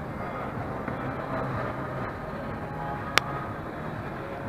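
Steady ambient noise of a large shopping-mall hall with a faint low hum, and one sharp click about three seconds in.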